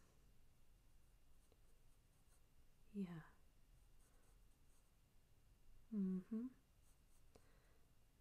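Faint, soft pencil strokes on paper during sketching, in a near-silent room. A short falling hum comes about three seconds in, and a quiet 'mm-hmm' near the end.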